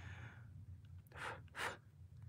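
Two short breathy exhales, about half a second apart, over a faint room hum.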